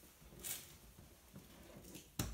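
Near-quiet room with a brief, faint rustle about half a second in and a few soft ticks after it, from clothing and limbs being moved as a seated person's legs are helped into a car.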